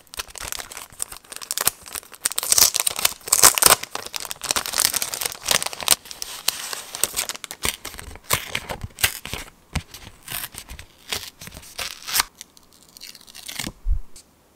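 Thin printed collage paper handled and torn by hand: crinkling and ripping, busiest in the first half and thinning out near the end, followed by a short dull knock.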